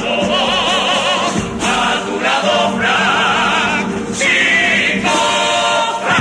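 A Cádiz carnival comparsa's chorus sings a pasodoble in several-part harmony, holding long notes with vibrato. It ends on a sustained chord near the end.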